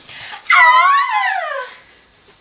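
A girl's high-pitched squeal of excitement: one unbroken call starting about half a second in, rising and then falling in pitch over a little more than a second.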